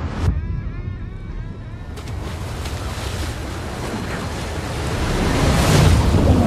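Wind gusting, with a sharp whoosh at the start and a string of short wavering tones, then a rushing noise that builds steadily and is loudest near the end: a sound-designed swell leading into a cut in a film trailer.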